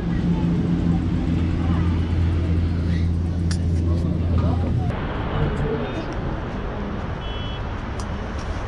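Steady low mechanical hum of a cable car station's drive machinery while a gondola runs through the station. The hum cuts off suddenly about five seconds in, and a rougher outdoor city background follows.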